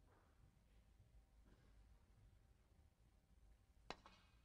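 Near silence of a hushed snooker match, with one sharp click of a snooker shot just before the end.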